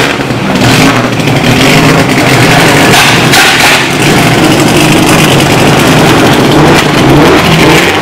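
Subaru Impreza rally car's flat-four engine running as the car rolls slowly past, its note loud and fairly steady.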